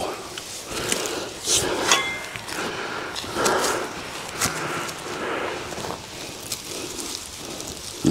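A shovel digging into dry garden soil, in a series of separate scrapes and crunches, as a hardy shrub is dug and pulled up by its roots.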